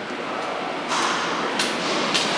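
Steady room noise of a large indoor hall, rising a little about a second in, with a few short sharp clicks such as footsteps or camera handling near the end.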